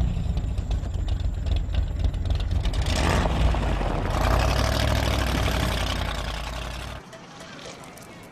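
A car engine running with a loud, deep low-pitched sound that stops abruptly about seven seconds in.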